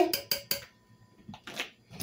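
A purple plastic measuring spoon knocking against the rim of a slow cooker's crock to shake off bouillon powder: a few quick sharp taps in the first half second, then faint small knocks.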